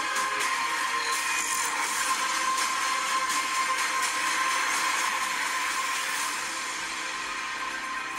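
Movie trailer soundtrack: loud, dense dramatic music with a noisy texture and a steady high tone, easing slightly near the end.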